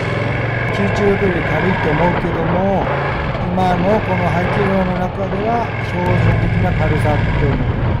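Ducati Panigale V2's 955 cc L-twin engine running steadily at low road speed, a low hum under the rider's voice, growing a little louder about six seconds in.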